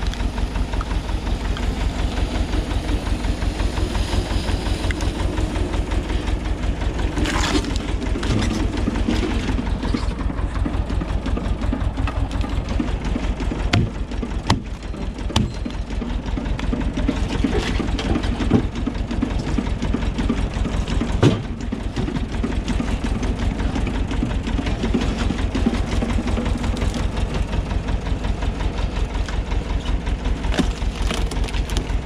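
Tractor engine running steadily at an even pulse, driving a screw-cone log splitter as the cone bores into a large log round. Several sharp cracks of the wood splitting apart come through, the loudest about two-thirds of the way in.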